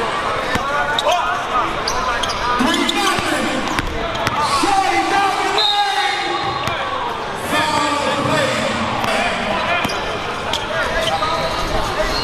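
Basketball bouncing on a hardwood gym floor in scattered impacts, over the chatter of many voices echoing in a large hall.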